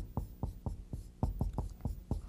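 Hand-writing strokes as a table is drawn out: a quick run of short taps and scratches, about five a second.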